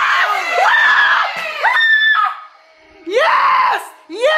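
Excited high-pitched screaming and yelling at a goal being scored. There is a short lull about two and a half seconds in, then more loud cries.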